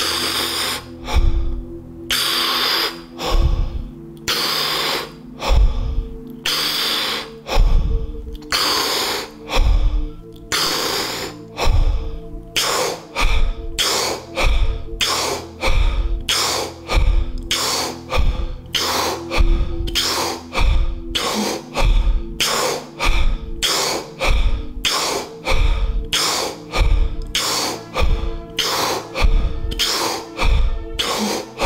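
Deep, forceful breathing, in and out through the mouth, in the steady paced rhythm of a Wim Hof-style hyperventilation round. The breaths come quicker after about twelve seconds. It plays over ambient music with a sustained drone and a low, regular beat.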